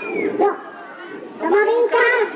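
A man's voice speaking into a handheld microphone, in two short phrases with a quieter pause between them.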